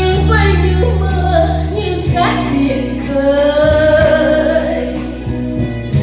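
Music with a woman singing into a microphone over an instrumental backing track with held bass notes.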